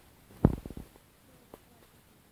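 A single sudden thump about half a second in, followed at once by a brief low rattle of several quick strokes, then a faint click about a second later.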